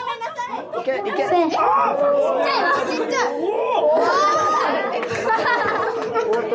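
Excited chatter of several young girls talking and calling out over one another, amplified through stage microphones.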